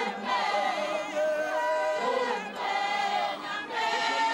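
A church congregation singing a hymn together, many voices holding sung notes in phrases with short breaks between them.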